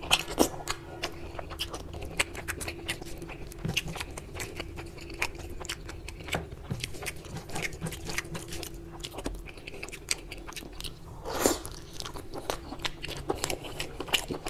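Close-miked chewing and wet mouth smacking of a person eating mutton curry and rice by hand, full of small wet clicks, with the squish of fingers mixing rice into curry gravy. One louder wet smack comes late on.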